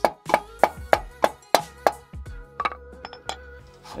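Hammer tapping on a wooden block wedged against a car's exhaust tip, about three sharp taps a second, knocking the stuck tip loose from the muffler. The taps stop about halfway through, followed by a few lighter clicks.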